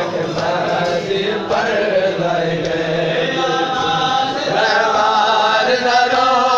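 A group of men chanting a nauha, a Shia lamentation, together in unison.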